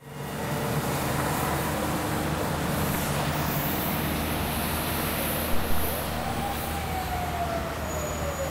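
City street traffic: a steady rush of traffic noise with a low hum, a sharp knock about five and a half seconds in, and a single tone falling in pitch near the end.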